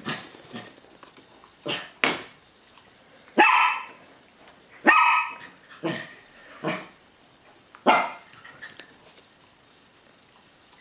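A dog barking in short, sharp barks, about eight of them, with the two near the middle held a little longer; the barking stops about two seconds before the end.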